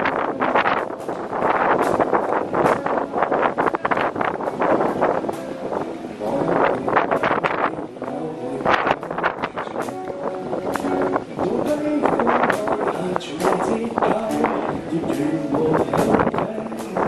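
Live busking performance of a Cantopop song: a male voice singing through a handheld microphone and small amplifier over a strummed acoustic guitar.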